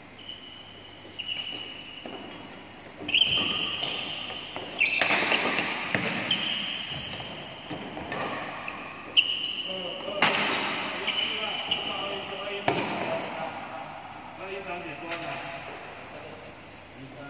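Badminton rally: rackets striking the shuttlecock with sharp cracks, feet thudding on the court, and short high squeaks from shoes on the court floor, with a little hall echo after the hits.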